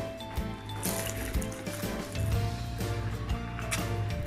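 Background music with steady held notes and a strong, even bass, with a few short clicks over it.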